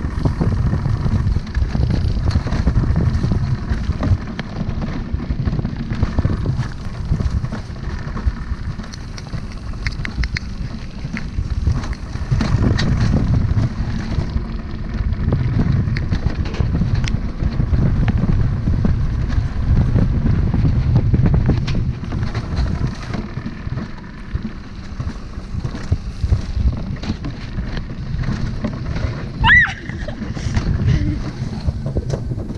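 Alpine coaster sled running down its metal rails: a steady low rumble with wind on the microphone, swelling and easing as the ride speeds up and slows, with a few clicks from the track. A brief high squeal sounds near the end.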